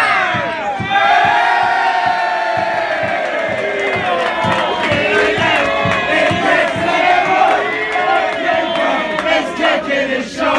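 Football crowd chanting in unison, many voices holding a long drawn-out sung note that slowly falls in pitch.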